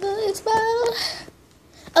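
A girl singing a few short wordless notes in the first second or so, some of them held steady, then falling quiet.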